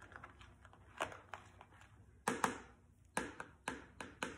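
About five light, irregular clicks and taps of a plastic straw knocking against a plastic tub as it is drawn through shaving cream and lifted out.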